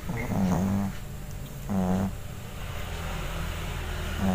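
A cat snoring in its sleep, with a rough, pitched snore on each breath about every second and a half.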